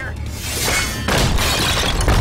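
A shattering crash of breaking crockery, starting about half a second in and getting louder from about one second in, over dramatic music.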